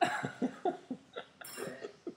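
Boston terrier chewing gum, a quick run of short chewing sounds at about four a second.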